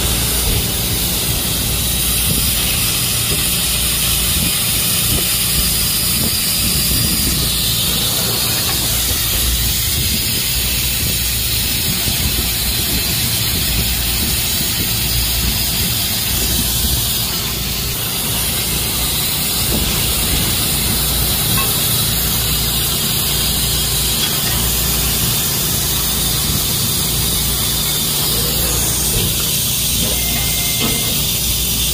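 Pipe laser cutting machine cutting a steel pipe: a steady loud hiss over a low machine hum.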